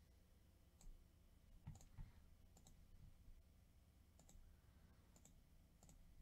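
Near silence with a few faint computer mouse clicks scattered through it, some in quick pairs.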